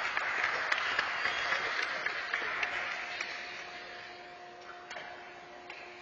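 Scattered applause, many small claps that die away over the second half. A faint steady hum comes in near the middle.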